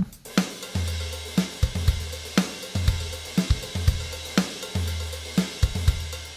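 Programmed software drum beat looping through Logic Pro's Note Repeater MIDI effect. Kicks carry long low bass tones, with sharp snare hits at a steady tempo and a constant wash of cymbals. The repeated crash cymbals are what the note range is being lowered to thin out.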